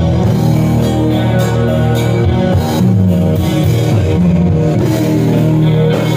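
Live rock band playing loud, an electric guitar carrying the melody over bass guitar and drum kit, with no singing.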